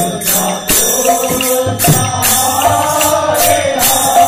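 Devotional kirtan singing: a woman's voice sings a melodic line through a microphone, accompanied by a barrel drum played in a steady rhythm.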